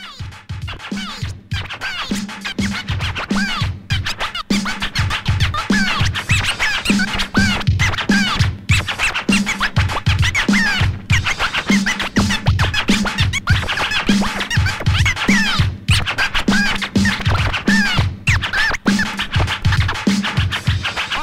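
Turntable scratching on a vinyl record: quick back-and-forth scratches over a steady drum beat, building up over the first couple of seconds.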